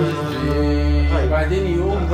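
An oud and an Arabic arranger keyboard playing together. The keyboard holds a low bass note that comes in about half a second in, and a man's voice hums the melody over it from about a second in.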